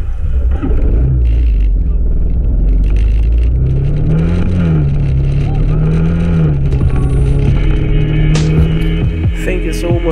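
Motorcycle engine running under way, its pitch rising and falling with the throttle. Music with vocals plays over it, clearest near the end.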